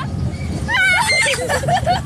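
Girls laughing and squealing in high-pitched voices, loudest about a second in, over the steady low rumble of a small fairground roller coaster running on its track.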